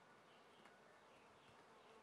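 Near silence: faint outdoor ambience with faint insect buzzing.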